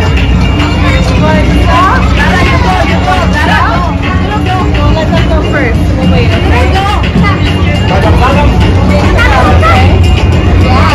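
Busy fairground: voices chattering over a steady low machine rumble, with music in the background.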